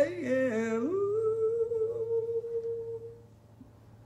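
A man's voice hums or sings a wavering phrase, then holds one long steady note that fades out about three seconds in.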